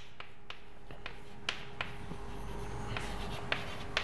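Chalk writing on a blackboard: several sharp taps of the chalk against the board, spaced irregularly, with faint scratchy strokes between them.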